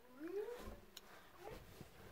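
Faint wordless voice humming a short tone that glides upward in pitch, followed by a few soft bumps of the phone being handled.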